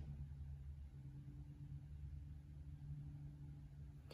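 Quiet room tone with a faint, steady low hum and no distinct events.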